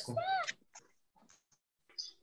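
A single short, high-pitched call whose pitch rises and falls, lasting about half a second, followed by near silence.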